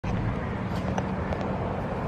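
Steady low outdoor background rumble, with a faint click about a second in as a hand-held camera is handled.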